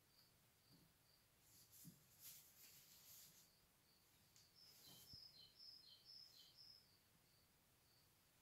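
Near silence with faint birdsong: small repeated high chirps, and a quick run of short falling chirps a little past halfway. A few faint rustles.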